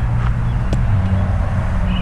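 Jeep Wrangler engine idling with a steady low hum, and a light click just under a second in.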